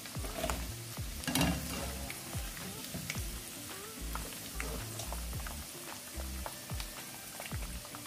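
Turmeric- and paprika-coated chicken pieces frying in hot oil in a nonstick pan: a steady crackling sizzle. A wire spider strainer moves through the oil and lifts the crisp pieces out.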